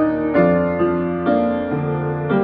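Solo upright piano played slowly and gently, new notes and chords struck every half second or so and left to ring.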